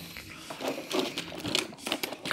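Hand rummaging through a drawer of tangled charger cables and old mobile phones: an irregular string of small plastic clicks, rattles and rustles.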